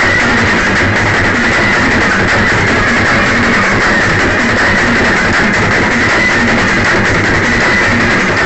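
Loud brass band music: trumpets playing over a snare drum, bass drum, a set of three mounted tom drums and a cymbal, continuous throughout.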